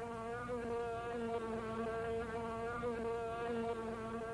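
Fly buzzing: a steady, pitched drone that wavers slightly in pitch.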